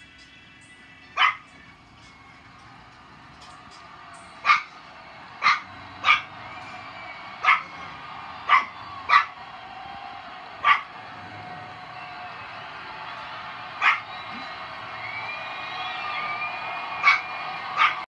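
A dog barking about eleven times, single barks at uneven intervals, over a faint background that slowly grows louder.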